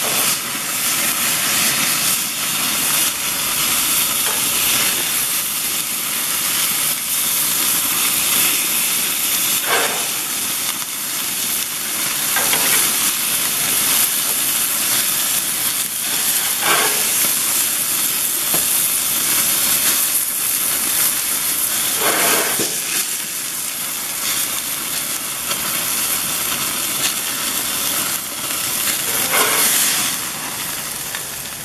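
Thick hamburger patties sizzling over open flames on a grill, with a steady hiss as fat drips and flares up in the fire. A few short crackles come through now and then.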